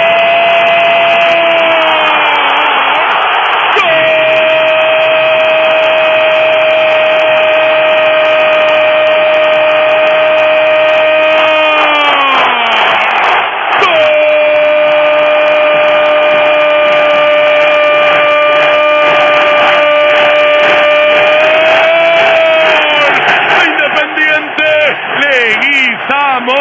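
Radio football commentator's drawn-out goal cry: a single 'gol' vowel held on one steady pitch for many seconds at a time, in three long breaths, each sliding down in pitch as it ends. It is the call of a goal just scored. Near the end the voice wavers and begins to move again.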